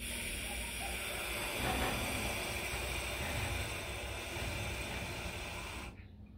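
Container wagons of a freight train rolling past close by: a steady rumbling hiss of wheels on rail that cuts off abruptly at the end.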